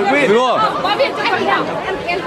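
Speech only: several people talking at once, a chatter of voices.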